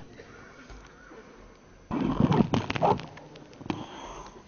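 Quiet room tone in the chamber, broken about halfway through by about a second of knocks, clicks and rustling that stop as suddenly as they start.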